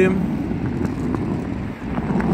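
Steady low rumble of city background noise.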